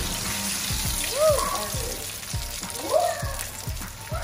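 Salmon croquette patty frying in hot oil in a frying pan: the oil starts sizzling and bubbling as the patty goes in, and keeps going steadily.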